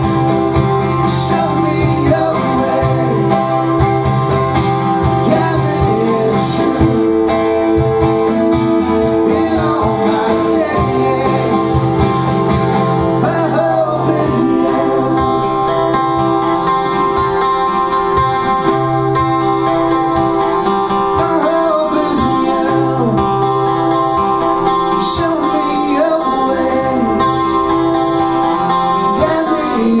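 Live acoustic worship song: a strummed acoustic guitar and a second plucked string instrument accompany a man's singing voice, running steadily.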